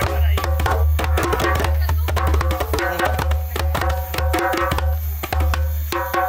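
Two rope-tuned djembes played by hand together in a quick, busy, repeating rhythm of many strokes, mixing deep low thumps with ringing higher tones and slaps.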